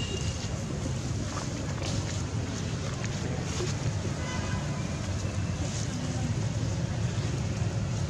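Steady low rumble with a hiss of outdoor background noise, unchanging throughout.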